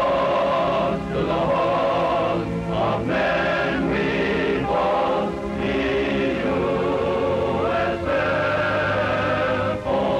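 Title theme music: a choir singing long held chords over orchestral accompaniment, the chords changing about once a second.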